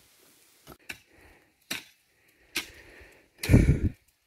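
A hoe chopping into dry, hard ground: about five separate strikes roughly a second apart, the last one near the end the loudest, with a deep thud.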